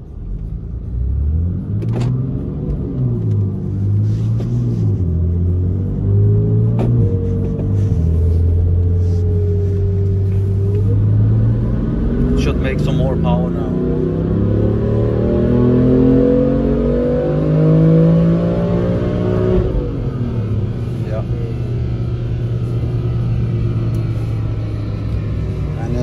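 BMW S55 twin-turbo inline-six, heard from inside the cabin, on a chassis dyno: the engine is brought up to speed, then pulled at full throttle with its pitch climbing steadily for about eight seconds. The throttle then closes near the two-thirds mark and the revs fall away to a steady lower drone as the rollers slow.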